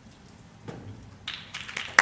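Audience in a large hall: quiet at first, then scattered clapping starting about halfway through and building as people begin to applaud.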